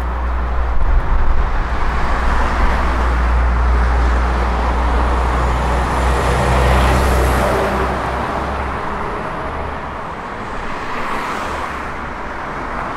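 Heavy diesel lorry driving past close by with its engine running low, together with tyre and traffic noise. It is loudest about six to seven seconds in, then eases off as it goes by.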